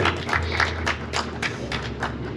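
Scattered clapping from a small audience applauding at the end of a song, dying away near the end.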